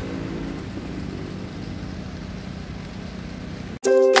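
Steady outdoor background noise with a low rumble. It cuts off abruptly near the end, and music starts.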